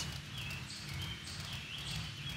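Ceiling fan running: a faint, steady low hum and rumble.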